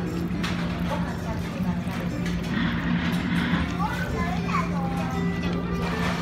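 Background music playing with indistinct chatter of other people around; no single sound stands out above it.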